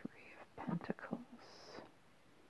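A person speaking in a soft whisper: a few quiet syllables, ending in a drawn-out hiss.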